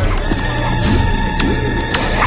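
Background music for a chase: a loud, steady track with a short figure that swoops up and down in pitch and repeats, over held higher tones and regular clicks.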